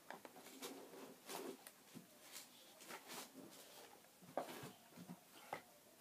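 Near silence with a few faint knocks and clicks, the clearest near the end: hands handling and adjusting the plastic head of a pedestal fan.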